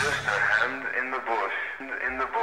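A child's voice repeating a short phrase, thin and narrow-sounding like a voice from a TV or radio, just as the heavy metal band's music cuts off.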